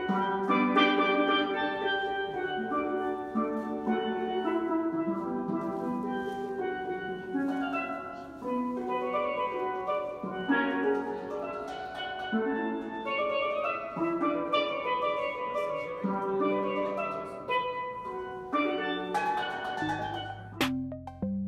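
A pair of steel pans played by a subway busker: a continuous, flowing melody of struck, ringing metallic notes, often several at once.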